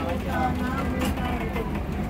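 Boat engine running steadily at low revs, a continuous low rumble, with faint voices over it.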